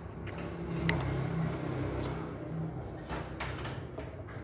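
Small plastic parts of a mini handheld mist sprayer being pried and handled with a small screwdriver: a sharp click about a second in and a brief scrape near the end, over a low steady hum.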